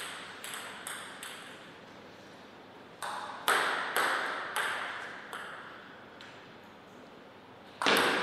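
Celluloid-plastic table tennis ball bouncing on the table, a few quick bounces at the start, then from about three seconds in a run of single bounces spaced farther and farther apart as the ball is bounced before a serve, each ringing briefly in the hall. A much louder sharp hit comes just before the end as the serve is struck.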